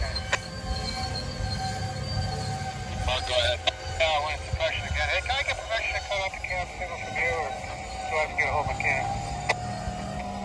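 Railroad radio voice traffic from a scanner, starting about three seconds in, over the steady low rumble of a freight train's coal hopper cars rolling past.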